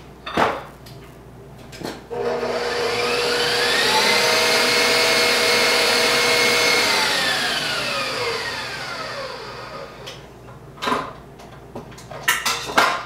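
Electric stand mixer whipping aquafaba in a steel bowl: its motor whine climbs in pitch as it is switched on and sped up about two seconds in, holds steady for a few seconds, then winds down and stops. A few short knocks come before it starts and one after it stops.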